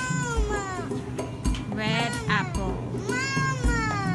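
A toddler's high-pitched whining cries, three drawn-out calls that rise and then fall in pitch, over background music with a steady low beat.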